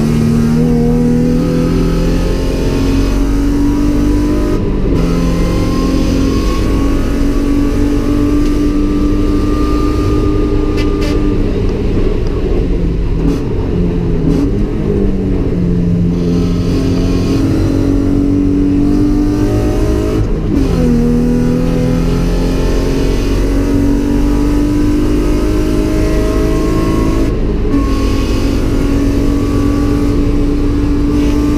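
GM LFX 3.6-litre V6 in a Mazda MX-5 at hard throttle, heard from inside the cabin: the revs climb steadily through the gears and drop sharply at each gearshift. Near the middle the revs fall and jump back up through several downshifts before climbing again.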